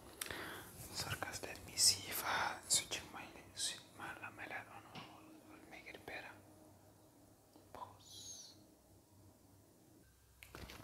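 A man whispering close to the microphone, with sharp hissing consonants, trailing off about six seconds in. A brief high chirp comes about eight seconds in.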